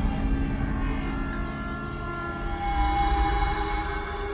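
Tense, eerie film score: several sustained, overlapping tones held over a deep low rumble.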